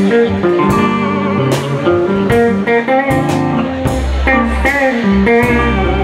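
Live rock band playing: two electric guitars over a drum kit with cymbal strikes, the guitar notes bending in pitch now and then. A deeper low part comes in about four seconds in.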